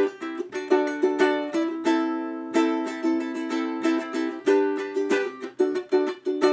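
A ukulele strumming chords, playing the instrumental intro progression of A minor, A minor, G and D.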